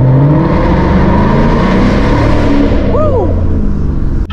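2023 Ford Mustang GT's 5.0-litre V8 accelerating hard inside a tunnel, loud and echoing, its note climbing steadily. A short vocal cry rises and falls about three seconds in.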